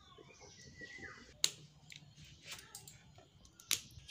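Quiet background with faint bird chirps and two short, sharp clicks, one about a second and a half in and one near the end.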